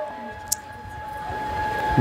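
A faint steady high tone held through the pause, with a single sharp click about half a second in.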